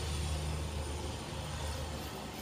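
A steady low mechanical hum with an even hiss over it, unchanging, with no knocks or clatter.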